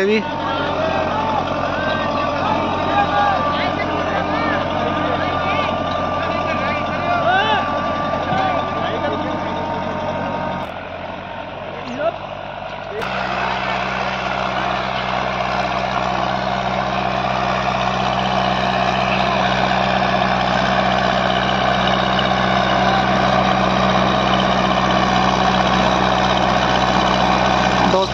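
Farmtrac tractor engine running under load, pulling a disc harrow through ploughed soil. The sound drops briefly about 11 seconds in and changes abruptly about 13 seconds in to a steadier, lower engine drone.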